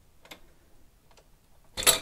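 Tower CPU heatsink being wiggled on its socket to break the grip of the thermal paste: a few faint ticks and clicks, then one louder brief noise near the end.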